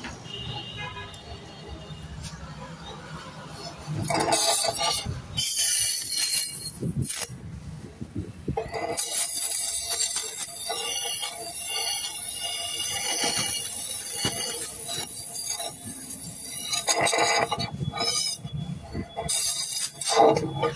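Music playing over the hiss of a gas torch flame working on the inside of a motorcycle silencer pipe. The hiss swells loud about four seconds in and again near the end.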